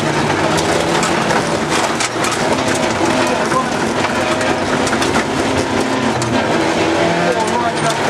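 Rally car's engine working hard, heard from inside the cabin, its pitch climbing and dropping as the driver accelerates and shifts, with loose gravel clattering against the underside.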